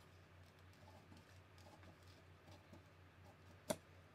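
Scissors snipping through pattern paper, faint, with one sharp click near the end.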